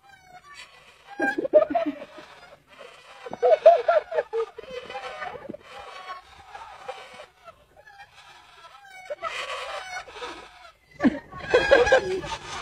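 Bird calls in short clucking bursts, heard several times with pauses between.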